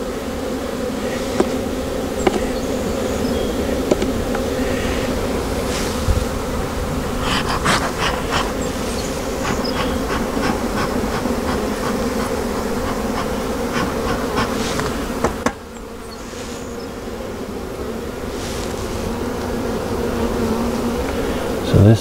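Honey bees buzzing in a dense, steady hum over an open hive box, with a few light knocks scattered through. The hum drops suddenly about three-quarters of the way through and then slowly builds back up.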